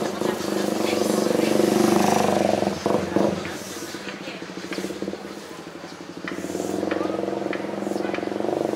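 Motorcycle engine running close by in street traffic, swelling to its loudest about two seconds in and fading away. Another engine builds up again from about six seconds on.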